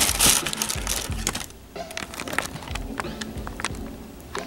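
Tissue paper crinkling and rustling as a sneaker is pulled out of its box: a loud rustle at the start, then irregular crackles.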